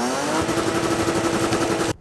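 Lexus IS200's 2.0-litre straight-six revved hard. Its pitch rises briefly, then holds steady at high revs, and the sound cuts off suddenly near the end.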